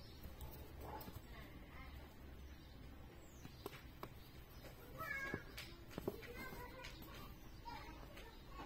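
A faint high pitched call in the background about five seconds in, over quiet room noise with a few soft clicks.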